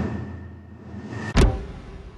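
Editing sound effect for an animated clapperboard: a fading hiss with a faint steady high whistle, then a single sharp clapperboard clap about one and a half seconds in.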